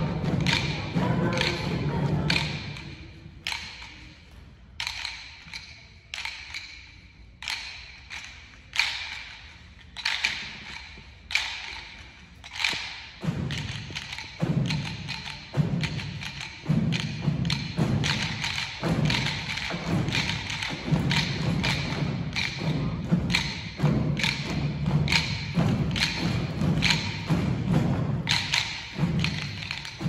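Choir singing, then rhythm sticks clicked together in a steady beat. About halfway through, low pulsing notes join in time with the sticks.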